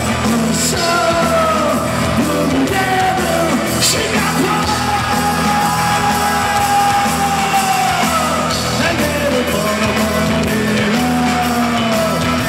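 Indie rock band playing live: electric guitar and drums under a singer's sliding, shouted vocal lines, with one long note held for several seconds in the middle.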